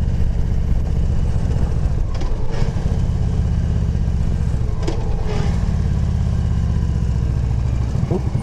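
Victory motorcycle's V-twin engine running steadily under way, with a dense, evenly pulsing low exhaust note and wind noise over it.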